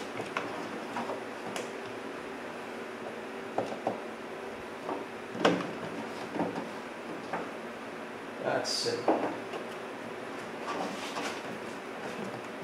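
Irregular plastic clicks and knocks as a truck's plastic cowl panel is handled and its push pins are pressed into their holes, with a brief hiss about nine seconds in.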